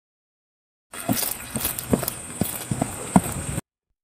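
AudioX-generated sound effect for a horse-riding clip: irregular hoof thuds and scuffs over a steady hiss. It starts about a second in and cuts off suddenly near the end.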